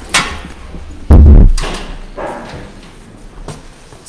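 Handling noise at the lectern microphone: a sharp knock, then about a second in a much louder, deep thump of the microphone being bumped, fading over about half a second.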